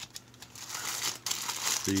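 Clear plastic bags crinkling and rustling as they are handled, the plastic sprues shifting inside; it builds from about half a second in into a dense crackle.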